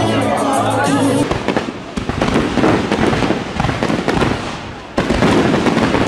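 Music cuts out about a second in and gives way to fireworks: a dense crackle of many small bursts. Louder salvos come in about two seconds in and again near the end.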